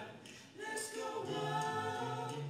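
Male vocal quartet singing a cappella in harmony, with a short break about half a second in before the voices come back on held notes.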